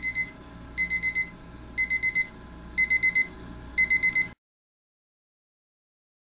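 Westclox 47309 quartz alarm clock's ascending-tone alarm beeping: quick groups of about four high-pitched beeps, one group each second. The sound cuts off suddenly about four seconds in.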